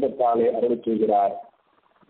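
A man speaking in a sing-song delivery, breaking off into a pause about one and a half seconds in.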